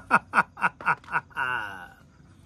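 A man laughing theatrically in character as a film villain, short 'ha' pulses about four a second ending in one drawn-out held note.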